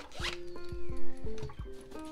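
A short zip of the zipper on a small fabric pouch, with background music playing under it.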